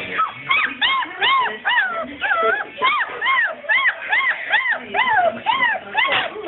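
Four-week-old basset hound puppies whining and whimpering, a quick string of short high calls that rise and fall, about two a second.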